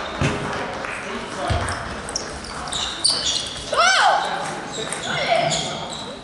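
Sports-hall ambience at a table tennis tournament: table tennis balls clicking on tables and bats from the other matches, under a murmur of voices in the large hall. A raised voice stands out about four seconds in.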